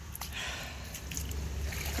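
Boots sloshing through shallow floodwater on a waterlogged grass path, a faint watery splashing over a low rumble.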